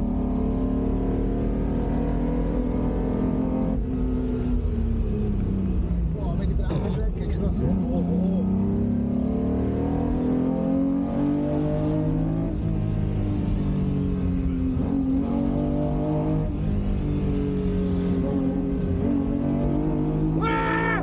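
The 1960 Ferrari 250 GT Drogo's V12 engine under way, heard from inside the cabin. Its note falls and climbs several times as the throttle and revs change, with a short clatter about seven seconds in.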